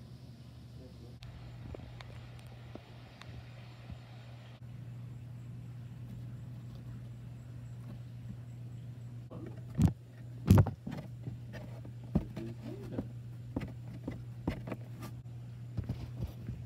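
Steady low hum with handling knocks from plastic toy dinosaurs: two loud knocks about ten seconds in, then a run of lighter taps and clicks.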